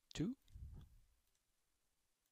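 A man says the word "two", followed by a few faint computer mouse clicks.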